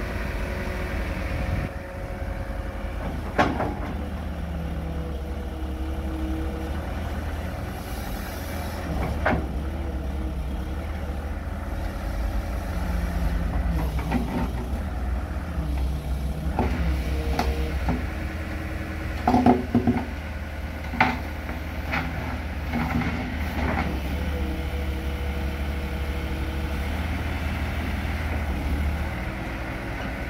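Sumitomo FA S265 hydraulic excavator's diesel engine running steadily under load while the boom, arm and bucket are worked, its hydraulic tone shifting in pitch as the controls move. Sharp metal clanks come a few times, with the loudest cluster about two-thirds through.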